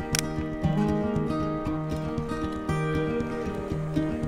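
Background music: a melody of plucked notes over a steady, bouncing rhythm.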